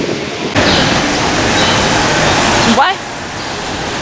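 Loud, steady rushing hiss of a rainy street, starting suddenly about half a second in and cutting off near the end, where a man says 'What?'.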